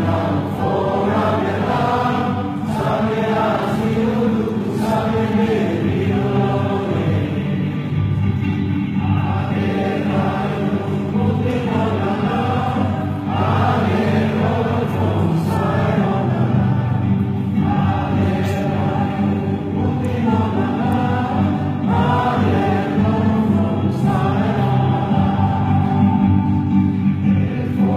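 A large crowd singing a song together in unison, many voices in long held phrases.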